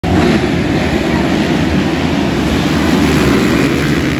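Many motocross dirt bikes' engines running loud together, a dense steady din.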